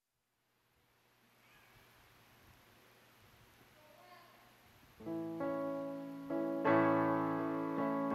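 Faint room tone, then about five seconds in an electric keyboard starts playing sustained chords, changing chord a few times: the introduction to the opening hymn of a Mass.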